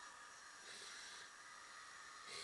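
Faint papery rustle of a glossy magazine being slid across other magazines on a table, a little louder for about half a second near the middle, over low hiss.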